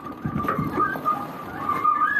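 Wind buffeting the microphone aboard a sailing yacht under way, with a steady high whistle-like tone running throughout.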